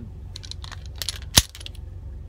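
Ruger LCP II .380 pistol being handled and loaded, small metallic clicks and rattles with one sharp metal click a little past the middle.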